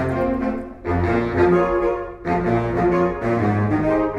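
A large saxophone choir playing live, the low saxophones, down to a contrabass, carrying a deep bass line under the higher saxophones. The music breaks off briefly about a second in and again just past two seconds, between phrases.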